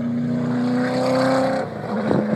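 Ford Falcon V8 Supercar's V8 engine running as the car drives by on track, its note rising slightly, then dropping away near the end.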